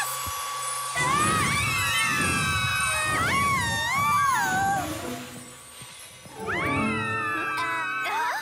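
Cartoon background music: a whimsical score of gliding, wavering melodic notes over a held high tone. It dips quieter a little past the middle, then a new sliding phrase starts.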